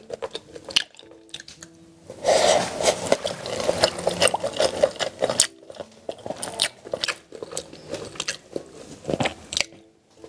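A person chewing a mouthful of food close to the microphone, with wet clicks and crackle. It is soft at first, then from about two seconds in a loud, dense run of chewing lasts about three seconds, and it eases to softer, scattered chewing near the end.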